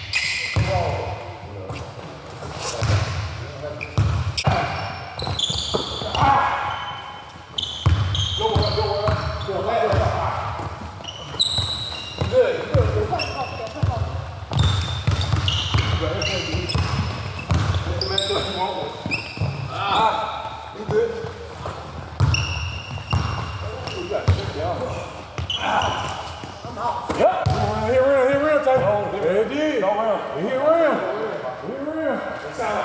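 A basketball being dribbled and bouncing on a hard court in repeated thuds, with players' voices calling out over it.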